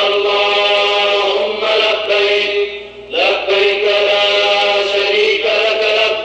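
Devotional chanting by voices in unison, sung in long held phrases with a short break about three seconds in.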